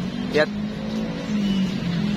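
Steady engine hum of motor traffic on a nearby road, its pitch lifting slightly about halfway through.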